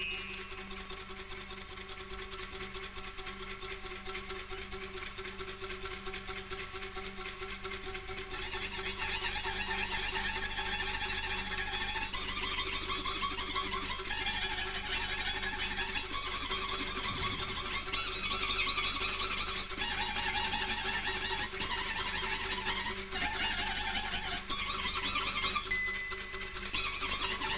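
Free improvised jazz from a trio of reeds, piano and percussion: a dense, fast-moving texture with short held pitches that shift every couple of seconds, growing louder about eight seconds in.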